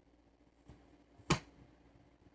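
A single sharp finger snap about a second and a quarter in, preceded by a faint tick.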